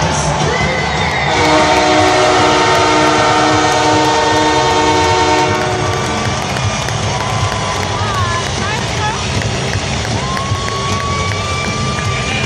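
An arena crowd cheers throughout. About a second in, a loud horn with a steady pitch blasts and holds for about five seconds before cutting off.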